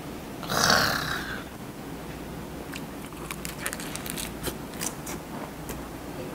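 A person biting into a lettuce wrap of raw fish, with one loud crisp bite about a second in. It is followed by close-up chewing: many small wet clicks and crunches of lettuce.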